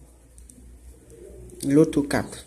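A man's voice drawing out one low syllable near the end, after a quiet stretch with a faint steady hum.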